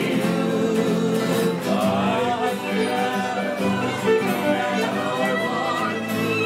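Live fiddle and several acoustic guitars playing a tune together.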